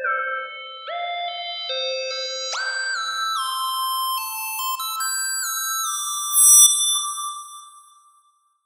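Synth lead melody played back in FL Studio: single notes that glide into one another and climb higher in pitch, with no low end because a high-pass EQ has cut the bass. There is a louder accent about six and a half seconds in, and the melody fades out near the end.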